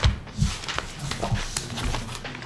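Irregular knocks and thumps, about five of them at uneven spacing, with the loudest two right at the start and about half a second in.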